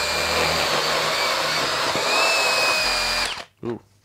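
Flex Turbo cordless hammer drill running in drill mode at speed two with turbo on, boring a 3/4-inch twist bit into a wooden beam. A steady motor whine under load with chattering cutting noise, which cuts off suddenly a little after three seconds in.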